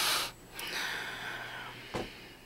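A person breathing hard: a loud breath at the start, then a longer breath of over a second that fades out, with a short click near the end.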